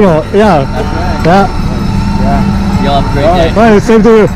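Men talking, with an engine idling steadily underneath as a low, even hum that comes through plainly in the pause between voices.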